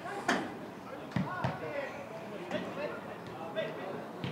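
A football being kicked on the pitch, twice, with sharp thuds, over shouting voices.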